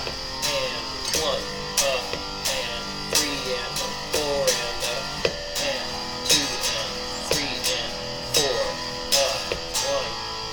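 Electric guitar strummed in a rhythmic strumming-pattern exercise with triplets: a regular run of chord strokes, about one to two a second, with the chords changing along the way.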